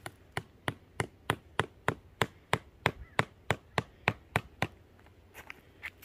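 A hammer driving a stake into the dirt, with steady blows about three a second that stop about four and a half seconds in, then two lighter taps near the end.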